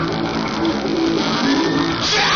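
Live rock band playing, with electric guitars to the fore over bass guitar and drums, loud and steady.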